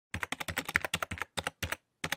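Computer keyboard typing clicks in a fast, irregular run of short bursts, about ten keystrokes a second, stopping just before the end.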